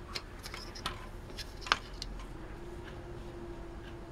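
Light clicks and taps from a metal floppy drive and a plastic strip being handled and set down on a work mat, with one sharper click about one and a half seconds in, over a faint steady hum.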